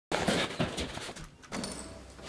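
Clicks and rattles of a steel entrance door's lock and handle as the door is unlocked and pushed open, with rustling around them.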